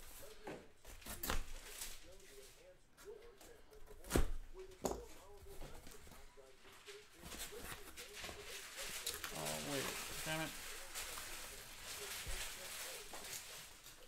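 Cardboard hobby boxes being unpacked from an inner case and handled on a desk: scraping and rustling of cardboard with scattered knocks, the loudest a sharp knock about four seconds in.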